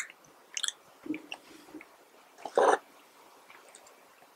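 Close-miked chewing of fast food: short crisp crunches and wet mouth clicks, with one louder, longer chewing sound about two and a half seconds in.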